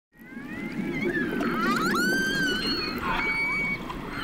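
Orcas calling: several overlapping whistles and calls that glide up and down in pitch, including a steep rising call about one and a half seconds in, over a low steady rushing background.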